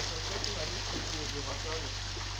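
Water pouring from an inlet pipe into a fish pond: a steady splashing rush.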